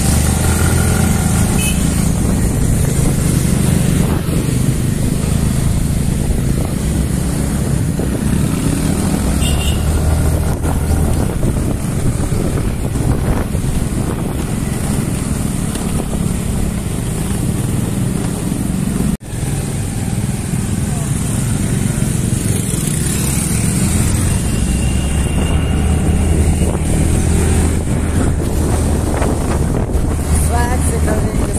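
Small motor scooter engines running on the move, a steady low drone with road and wind noise, heard from the back of a riding scooter. A brief dropout breaks the sound about two-thirds of the way through.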